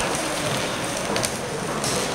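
Hubbub of a crowd moving through a large hall: a steady wash of indistinct voices and footsteps on the floor, with a couple of sharper clicks in the second half.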